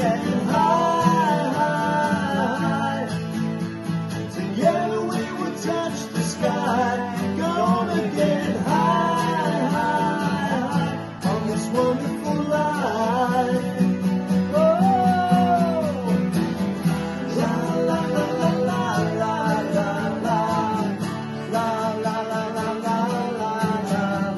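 Several acoustic guitars strummed together, with men singing a rock song over them.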